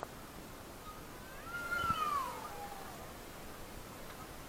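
A single drawn-out, mewing call, about a second and a half long, that rises briefly and then slides down in pitch. It stands over a steady background hiss.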